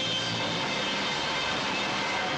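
Live rock band's amplified instruments holding a steady, dense distorted drone with a few held tones and no drum beats, heard on an old VHS tape.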